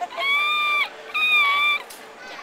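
Common squirrel monkey giving two high-pitched, drawn-out squeaky calls, each about three-quarters of a second long and held at an even pitch with a slight upturn at the end.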